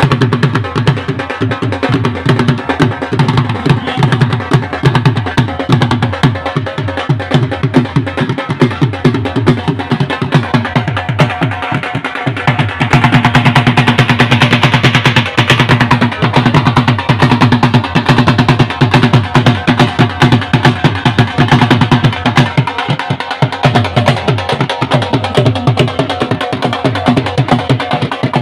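Dhol drums beaten in a fast, continuous rhythm of dense, evenly repeating strokes, growing louder about halfway through.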